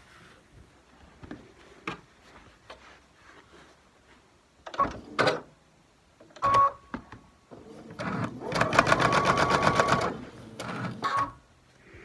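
Brother computerized sewing machine: a few clicks and a short beep, then a brief burst of rapid, even stitching for about two seconds near the end as a quilt-block seam is sewn.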